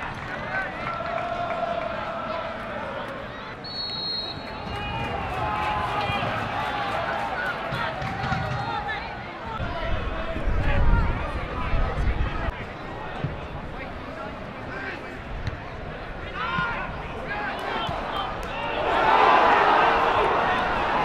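Football stadium crowd: many voices shouting and calling from the stands over a steady background noise, with a low rumble around the middle. The crowd noise swells in the last second or two as an attack develops.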